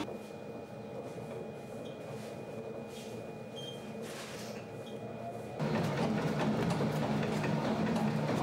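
Large commercial planetary dough mixer running steadily, its motor humming with a few constant tones as it works the starter dough. About five and a half seconds in, the sound grows louder and fuller.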